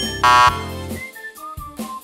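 A loud, buzzing 'wrong answer' sound effect, like a game-show buzzer, sounds for about a third of a second shortly after the start, marking the incorrect answers. A few short musical tones stepping downward follow in the second half.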